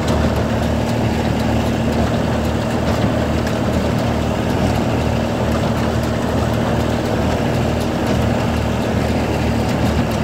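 Ford Dexter tractor's three-cylinder diesel engine running steadily under load, towing a Massey Ferguson 15 small square baler that is picking up hay. The baler's mechanism adds faint clicks over the engine.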